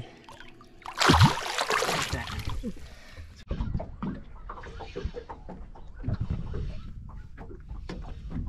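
A barramundi splashing at the surface as it is let go beside the boat: a loud burst of splashing about a second in that lasts around two seconds. Then a lower steady wash of water and wind noise.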